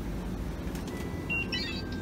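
Steady low hum of a convenience store beside its refrigerated display cases, with a short electronic beep about one and a half seconds in, followed at once by a quick flurry of higher beeps.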